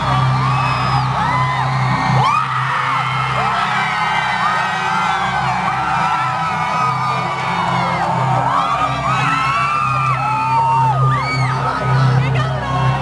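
Concert crowd cheering and whooping, many high shouts overlapping, over a steady low droning tone from the band's sound system as the song begins.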